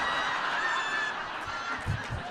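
An audience laughing together in a large hall, a steady wash of many voices after a punchline.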